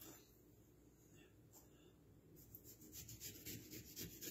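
Mostly near silence; from about halfway in, a faint run of quick scratchy strokes as a kitchen knife starts cutting into a halved dragon fruit on a plate.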